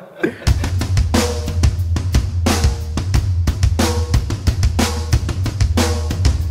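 Intro music: a drum kit playing a steady beat of kick, snare and cymbal over a continuous deep bass, starting about half a second in.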